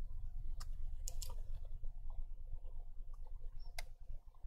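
A few sharp, scattered clicks of a computer mouse and keyboard, about four in all, over a low steady hum of background noise.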